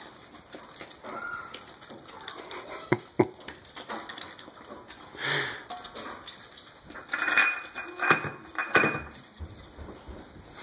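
Mallard drake pecking dry kibble off a tile floor and around a metal bowl: irregular clicks and rattles of bill on pellets, tile and bowl, with a sharp knock about three seconds in and busier rattling near the end.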